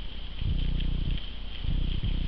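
Wild boar grunting low and repeatedly, in runs of about half a second to a second with short breaks between them.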